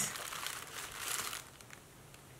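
Thin tissue gift-wrap paper crinkling and rustling as hands handle a wrapped package, dying away near the end.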